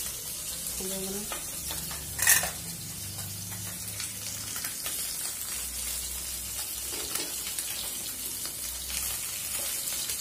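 Small whole fish shallow-frying in hot oil in a pan, sizzling steadily, with a short sharp clatter a little over two seconds in.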